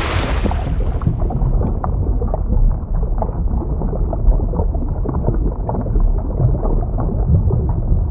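Underwater ambience sound effect: a deep, steady rumble with scattered small bubble pops. The hiss of a splash dies away in the first second or two.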